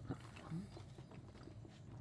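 Faint, scattered wet clicks of someone chewing a soft, sticky Hi-Chew candy with the mouth closed.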